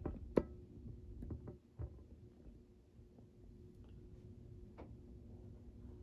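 Faint steady electric fan-motor hum, with a few light knocks and clicks over it, the sharpest about half a second in.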